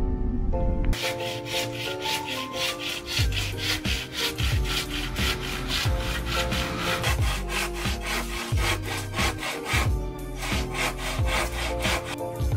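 Hand saw cutting through a green bamboo tube in quick, regular back-and-forth strokes, starting about a second in with a short break near the end. Background music with a melody and a steady kick drum runs underneath.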